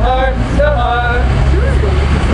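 Voices drawing out the word 'heart' in a sing-song chant, stopping a little over a second in, over a steady low rumble of street traffic.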